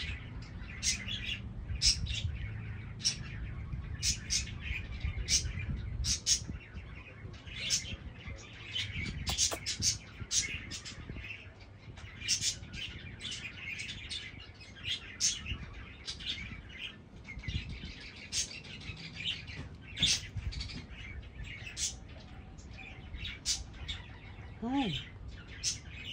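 Small birds chirping throughout, several short high chirps a second, over a low steady background rumble.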